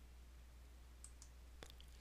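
Near silence over a steady low hum, with a few faint computer mouse clicks in the second half, the sharpest about a second and a half in.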